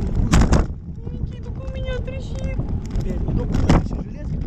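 Wind buffeting the microphone of a camera on a parasail rig high over the sea: a steady low rumble with two sudden loud blasts, one about half a second in and one near the end. Voices talk faintly under it.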